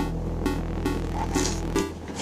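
Soft background music with a steady low hum under it that cuts off near the end. The pages of a large, heavy art book rustle briefly as they are flipped.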